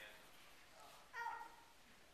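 A brief high-pitched voice-like sound about a second in, dropping slightly in pitch, over faint room tone in a hall.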